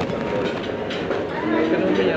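Busy restaurant dining-room din: a steady murmur of many background voices with a few short clinks and knocks, and a voice rising out of it near the end.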